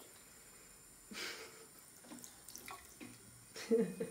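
Bathroom sink tap running a thin, steady stream into the basin while a small child rinses his face with his hands, with a brief splash about a second in. A short child's vocal sound comes near the end.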